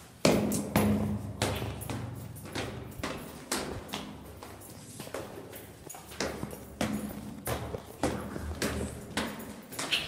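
Footsteps going down a flight of stairs, an even tread of about one and a half steps a second, the step just after the start the loudest.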